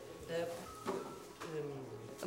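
Indistinct voices of people talking in a room, with a single short knock about a second in.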